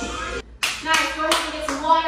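Dance music cuts off about half a second in, then a few hand claps, about three a second, together with a woman's voice.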